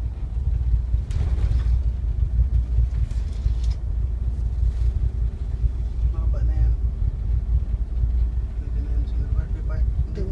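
Tugboat's engine rumbling steadily and deep while towing at sea, with brief bursts of hiss about a second and three seconds in.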